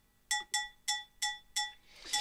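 Detuned, cleaned-up cowbell loop playing solo from music software: short bright metallic hits with a clear pitch, about three a second in a steady groove, each ringing briefly and dying away quickly.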